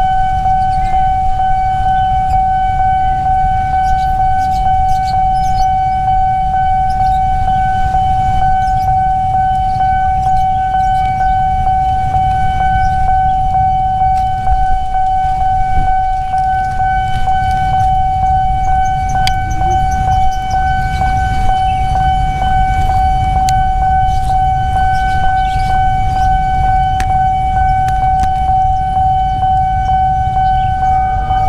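Railway level-crossing warning alarm sounding one continuous, unbroken electronic tone, the signal that a train is approaching the crossing. A low rumble runs underneath.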